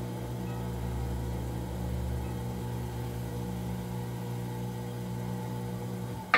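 Electric potter's wheel motor running at a steady speed: an even, unchanging hum with a faint whine above it.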